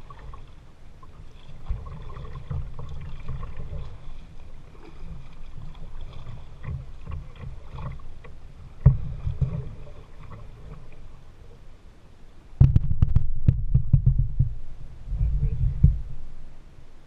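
Water lapping and slapping against a kayak's hull as it is paddled across choppy water, heard through a camera mounted on the bow as a low rumble with knocks. One sharp knock comes past the middle, and a loud run of knocks and splashes comes near the end.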